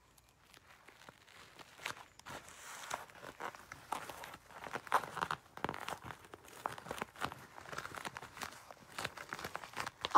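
Faint, irregular crackling and ripping of duct tape being peeled back and pressed onto a crinkling plastic shopping bag, starting about a second in.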